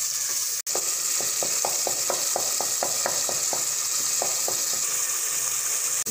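Tomato and onion masala sizzling and bubbling in hot oil in a non-stick pot, a steady frying hiss as the tomatoes cook down with a little added water. A wooden spatula stirs through it in quick strokes, about five a second, from about a second in until past the middle.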